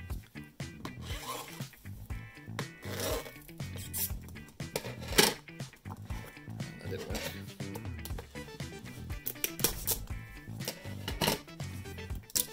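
Scissors snipping through plastic shrink wrap on a cardboard box and the wrap crinkling as it is pulled away, with one sharper snap about five seconds in, over background music.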